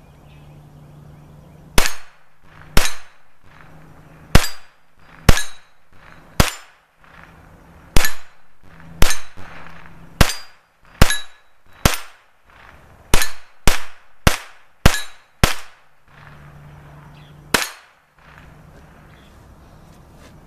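Taurus TX22 Competition .22 LR semi-automatic pistol firing a full 16-round magazine with no failures: sixteen sharp shots at an uneven pace, about one a second, with a quicker run of five near the middle and a last shot after a pause. Several shots are followed by a short metallic ring from the steel targets.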